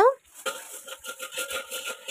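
Hot oil sizzling and crackling in a small frying pan as tempering spices fry in it: a dense patter of tiny pops from about half a second in.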